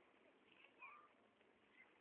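Near silence, with a faint, short cat meow a little under a second in.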